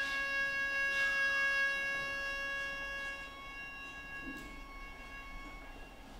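The closing note of a traditional Japanese string accompaniment, held as one steady pitch and slowly fading away until it dies out about two-thirds of the way through.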